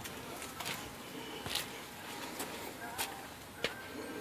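Faint footsteps and handling noise: a low rustle with a few scattered light clicks and taps.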